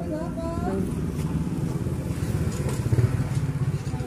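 A motor vehicle's engine running close by, growing louder to a peak about three seconds in and then easing off, like a vehicle passing. A voice is heard briefly at the start.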